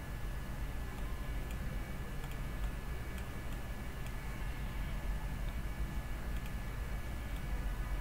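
A few faint, irregular computer mouse clicks over a steady background hum and hiss, with a thin steady high whine.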